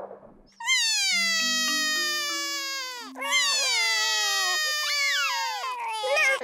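Cartoon toddler crying over a lost toy: two long wails, each sliding slowly down in pitch, the first starting about half a second in and the second about three seconds in.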